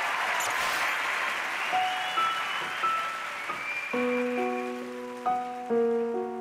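Applause fading away with a few soft high chime tones over it, then a slow piano intro begins about four seconds in, with sustained notes and chords.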